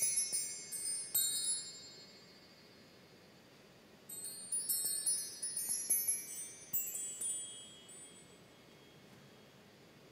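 High chimes tinkling in two runs of many overlapping ringing notes. The first dies away about two seconds in, and the second starts about four seconds in and fades out near the end.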